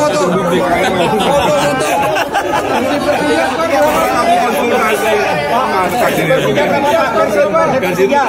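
Several men talking over one another in lively, overlapping chatter.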